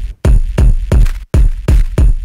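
E-mu SP-1200 kick drum sample struck over and over, about three hits a second, with a heavy, crunchy, distorted low end from the bass EQ boosted and the analog mixing console channel driven into saturation.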